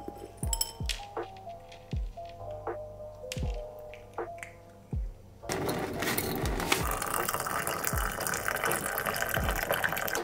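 Background music with a steady low beat about once a second. About halfway through, water begins pouring steadily into a glass teapot of dried flower tea and runs on under the music.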